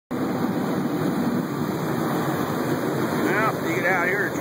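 Steady rushing noise of wind and water, and perhaps the boat's motor, on the deck of a small catamaran under way. A man's voice starts up near the end.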